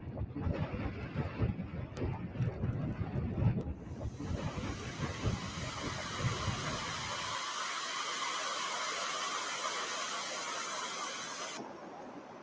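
Jet airliner engine noise from a montage soundtrack: an uneven low rumble for the first several seconds, then a steady hiss that cuts off suddenly near the end.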